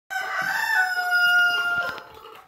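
A rooster crowing: one long call that steps slightly down in pitch partway through.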